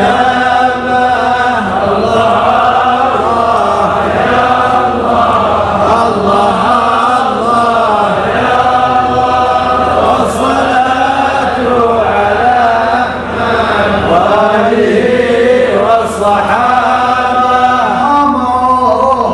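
Many men's voices chanting a devotional chant together in unison, loud and continuous.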